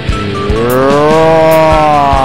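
Background music with a steady beat; a sustained note slides up in pitch about half a second in and holds.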